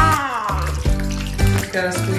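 Background music with a steady beat, over the hiss of water running as a wet cat is rinsed in a bathtub.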